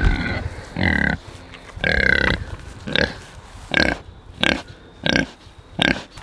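Pigs making short calls at a fence, about one a second.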